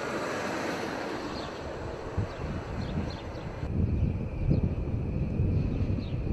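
Airport ambience: jet aircraft engines running out on the apron, with wind buffeting the microphone. The low, gusty rumble grows stronger about two-thirds of the way through.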